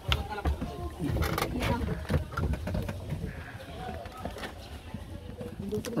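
Footsteps and knocks on the wooden plank floor and bench of an outrigger boat as people climb aboard, with a few sharp knocks in the first two seconds. Voices can be heard in the background.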